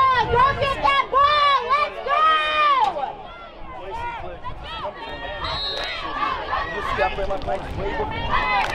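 Spectators shouting and cheering in high-pitched voices, with long held calls in the first three seconds that then fade into quieter scattered voices.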